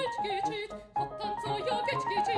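A woman singing in classical operatic style with wide vibrato, accompanied by a grand piano.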